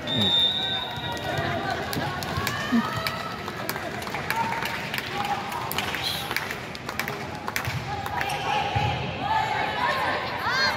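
Crowd chatter in a large indoor volleyball arena, with repeated sharp thuds of volleyballs being hit and bounced on the hardwood court.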